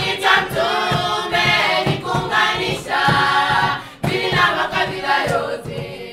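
A group of women singing together in chorus, in held phrases that pause briefly about two and four seconds in.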